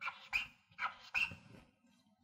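Short squeaking strokes of writing on a blackboard as the number 544 is written, about four squeaks in the first second and a half.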